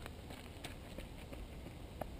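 Faint footfalls of a runner on a dirt path: a few light, irregular taps over low background noise.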